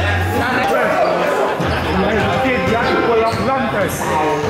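A basketball bouncing on a gym floor a few times, with voices echoing in the hall.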